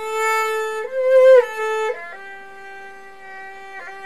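Erhu playing a slow phrase of long bowed notes: a held note steps up and back down, then a softer, longer, lower note follows.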